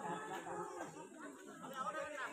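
Several people talking at once in overlapping chatter, no single voice standing out.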